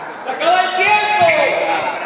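A voice calling out with one long drawn-out note that falls in pitch at the end, echoing in a large sports hall, with a few knocks from the hall floor.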